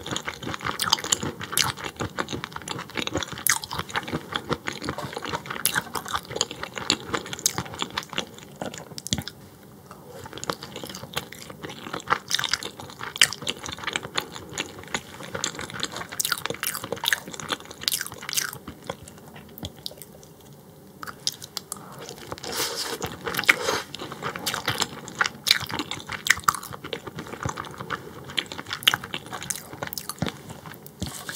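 Close-miked chewing and biting of raw croaker (min-eo) sashimi and skin: wet, crunchy mouth sounds with many small clicks, pausing briefly around ten seconds and again around twenty seconds in.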